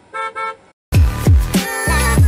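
A cartoon car-horn sound effect honking twice in quick succession, in a brief break in the electronic outro music. The music comes back just under a second in, with deep falling bass notes.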